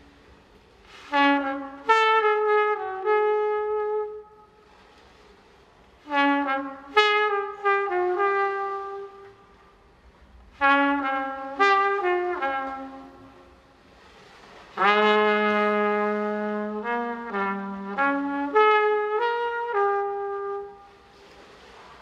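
Trumpet playing improvised jazz phrases, each a quick run of notes, with short pauses between them. About two-thirds of the way through, a longer phrase opens on a held low note.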